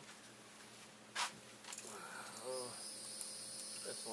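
Insects start a steady, high-pitched drone a little under two seconds in. Just before it comes a single sharp click, and a short murmured hum from a man's voice follows.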